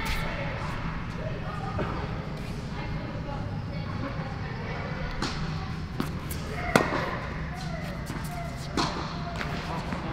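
A tennis rally: a ball struck by rackets and bouncing on the court, about five sharp pops at uneven spacing, the loudest near the middle. Voices chatter in the background of the large hall.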